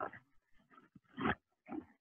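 A pause between speakers, mostly near silence, broken by two or three short, faint vocal noises picked up on a video-call microphone.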